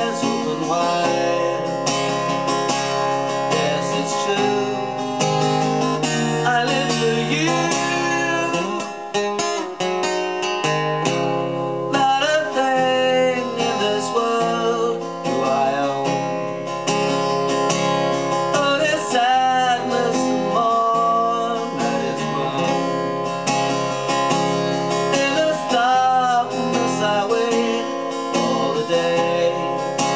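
Acoustic guitar strummed steadily, with a man singing a melody over it.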